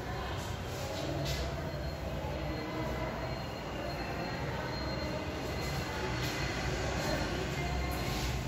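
A duster rubbing across a chalkboard in repeated wiping strokes as the writing is erased, over a steady low rumble.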